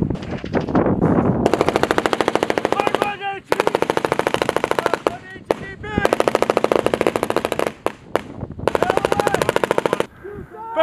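M249 light machine gun firing four long automatic bursts of rapid, evenly spaced shots, each lasting about a second and a half, with short pauses between them.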